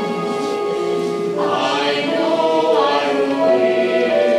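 Choir of voices singing in long held notes, growing fuller and brighter about a second and a half in.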